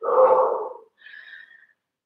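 A woman's breathy, voiced exhale lasting under a second as she curls up into an abdominal crunch, followed by a fainter short breath about a second in.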